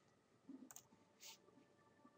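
Near silence, with a few faint computer mouse clicks about half a second in and one more a little later.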